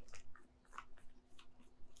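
A deck of tarot cards shuffled by hand: faint, irregular clicks and soft slides of cards against each other, with a short lull about half a second in.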